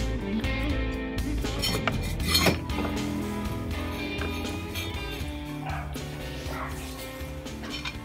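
Metal parts and tools clinking on an aluminium jet-pump housing as a Sea-Doo impeller is refitted and its fastener threaded on, a few sharp clinks with the loudest about two and a half seconds in. Soft background music runs underneath.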